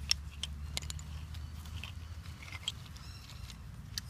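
Hands handling stone and bone tools on a buckskin bag: scattered light clicks and taps with soft leather rustling, over a low steady rumble.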